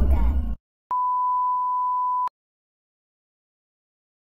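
Music with rapped vocals cuts off abruptly about half a second in. After a short gap, a single steady, pure electronic beep sounds for about a second and a half and stops abruptly.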